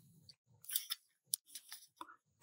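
Faint sounds from a reader pausing between sentences: a short breath about half a second in, then a few soft mouth clicks.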